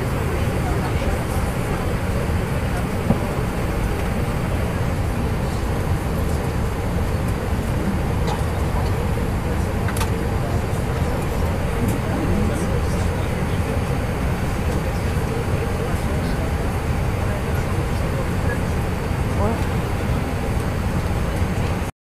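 Steady low rumble of an airliner cabin with indistinct passenger voices murmuring over it, and a brief click about three seconds in.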